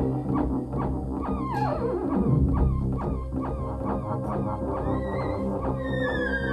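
Theremin played live: a repeating run of short pitched notes, about three a second, over a low steady drone, with a long falling glide about a second and a half in and wavering held notes near the end.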